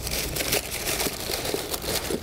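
Paper packaging crinkling as a pair of shoes is taken out of a box: a dense run of small crackles.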